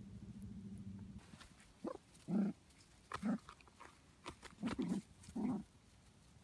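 Shetland sheepdog puppies at play: a low steady growl for about the first second, then five short growls spaced through the rest.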